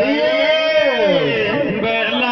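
A man singing a Meena folk song through a microphone and loudspeakers, drawing out one long sung note that slides down in pitch about a second in, with a new phrase starting near the end.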